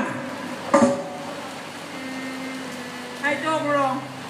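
A performer's voice over a stage PA system in two short phrases, one about a second in and one near the end, over a steady hiss and hum.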